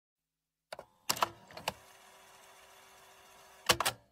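Silence at first, then several short clusters of sharp mechanical clicks about a second apart, the last pair near the end. A faint steady tone holds between the clicks. These are the opening sound effects of a pop song's intro.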